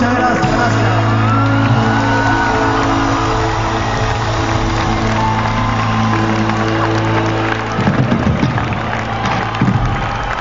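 Rock band on stage holding a long sustained closing chord, which breaks off about eight seconds in, while the concert crowd cheers and whoops.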